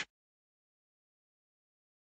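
Dead silence, with no background sound at all.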